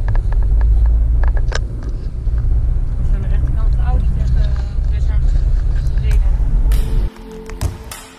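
Loud, steady low rumble of a car on the move, heard from inside the cabin. It cuts off abruptly about seven seconds in and background music takes over.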